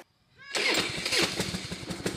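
Old Harley-Davidson V-twin motorcycle engine starting: it fires up about half a second in and keeps running with a rapid string of firing pulses.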